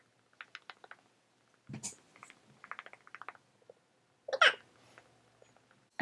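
A damp makeup sponge pressed and dabbed against the skin of the face: runs of faint soft taps, several a second. A short, louder throat or mouth sound comes about four and a half seconds in.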